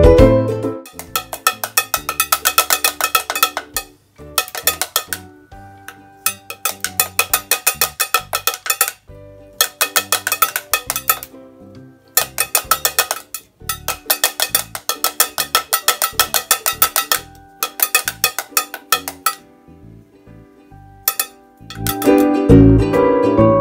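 Homemade string drum (pellet drum) made from jar lids on a wooden stick, twirled so that two beads on strings strike its faces in quick clacking runs of about ten strikes a second, with short pauses between runs.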